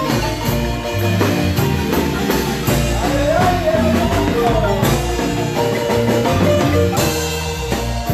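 Live marimba band playing a son: several players striking the wooden bars in quick runs of notes, over a steady bass line from an electric keyboard.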